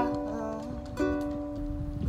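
Ukulele chords strummed and left ringing, with a fresh strum about a second in.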